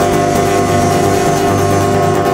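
Small live band of electric and acoustic guitars, electric bass, drums and harmonica holding a sustained chord, with drum and cymbal hits over it.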